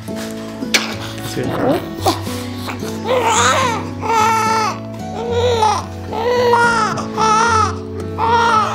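Newborn baby crying in a string of short wails, about one a second, from about three seconds in. The crying sits over soft background music with sustained chords.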